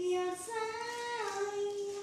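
A child singing a few held notes: a short note, then a higher note held for most of a second, which slides down to a lower note held to the end.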